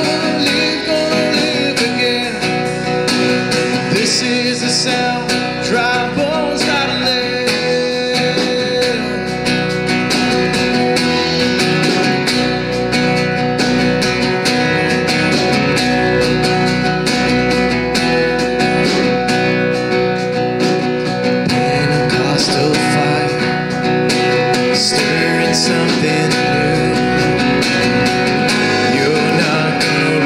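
Live worship band playing a song: strummed acoustic guitar, electric bass and drum kit, with a man singing lead.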